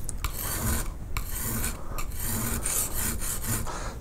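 Steel skew chisel being honed on a coarse oiled bench stone: a repeated scraping of the bevel across the stone in strokes with brief breaks, merging the bevels into one rounded cutting edge.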